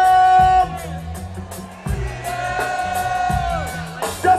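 Live reggae band playing: a steady bass line and drums with regular hi-hat ticks, under long held melodic notes that glide down at their ends.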